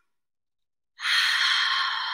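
A woman's long, airy breath out through the mouth as part of a deep-breathing exercise, starting about a second in after a silent pause and slowly fading away.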